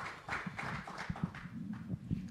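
Faint, irregular taps, knocks and rustling as people sit down on chairs and have microphones fitted.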